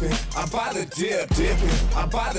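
Hip-hop track with a male rap vocal over a beat with a deep bass line; the bass drops away about half a second in and returns near the middle.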